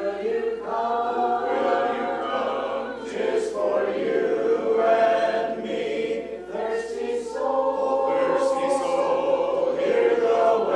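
Congregation singing a hymn a cappella in parts, many men's and women's voices together, in held, steady phrases.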